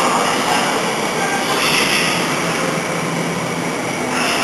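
Tsukuba Express TX-2000 series electric train pulling into the station platform and slowing, with steady wheel and running noise.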